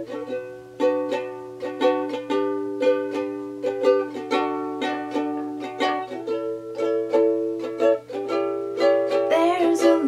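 Acoustic ukulele playing an instrumental intro, a steady pattern of plucked chords about three strokes a second, each chord ringing on.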